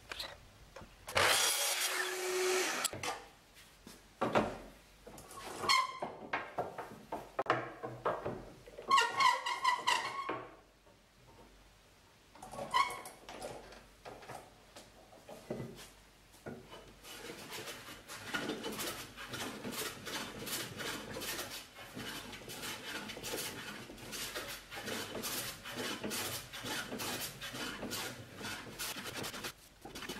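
Sliding miter saw running and cutting wood in several short loud bursts, some with a pitched motor whine, through the first half. From just past halfway comes a hand plane shaving the edge of a board in quick, repeated strokes.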